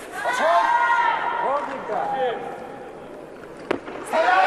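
Arena voices shouting drawn-out calls of encouragement during a barbell clean, easing off after about two and a half seconds. A single sharp knock follows near the end, where the lifter catches the barbell on his shoulders.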